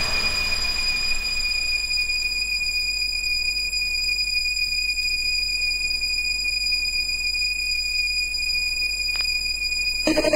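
A single steady high-pitched electronic tone held over a soft hiss, with no beat: a breakdown in the DJ's mix. The hiss thins out over the first couple of seconds, and there is a faint click near the end.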